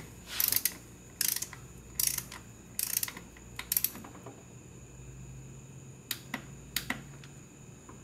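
Ratchet of a click-type torque wrench, clicking in short bursts with each back-stroke as an intake manifold bolt is run down, about one burst a second. It pauses for a couple of seconds, then clicks a few more times near the end.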